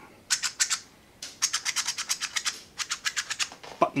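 Spring-loaded lock buttons in a 3D-printed plastic blaster stock section clicking as they are pressed in and spring back. A few clicks come just after the start, then a fast run of about eight to ten a second, then a few more near the end: the buttons are moving freely and working properly.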